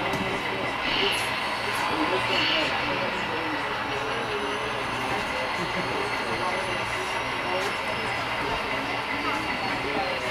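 Background chatter of several people talking at once in a room, over a steady rumble, with a short laugh about six seconds in.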